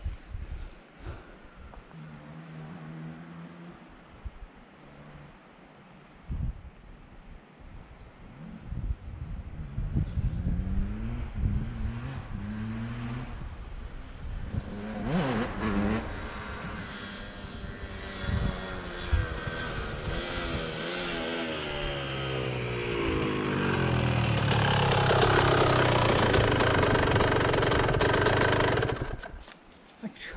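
Dirt bike engine approaching, growing louder with revs rising and falling, then running loud and fairly steady before being cut off about a second before the end.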